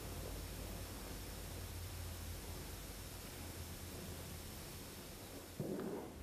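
Small oxy-acetylene torch flame hissing steadily, faint, with a low hum underneath, as it heats a work-hardened copper strip to anneal it. Near the end a short, louder, muffled sound.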